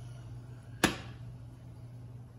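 A single sharp knock of a stainless-steel saucepan being set down on a glass-top electric stove, over a low steady hum.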